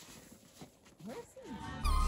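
Two or three short vocal calls that glide up and then down in pitch about a second in, over a quiet background. Music starts suddenly just before the end.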